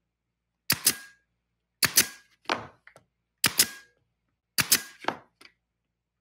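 Senco pneumatic stapler firing staples into a wooden box: about five sharp shots roughly a second apart, each a quick double snap followed by a brief ringing tone.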